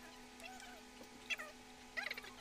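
Faint, short, high-pitched meow-like calls: one curving call about half a second in and a shorter falling one a little past a second, over a steady low hum.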